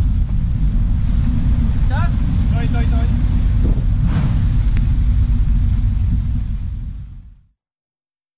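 Strong wind buffeting the microphone over the rush of rough sea aboard a sailing yacht in heavy weather, with a brief cry of voices about two seconds in. The sound fades out to silence near the end.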